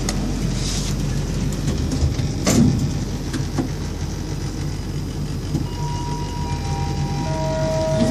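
ThyssenKrupp traction lift car travelling down: a steady low hum from the moving car, with a single knock about two and a half seconds in. In the second half, steady tones come in one after another, each lower than the last.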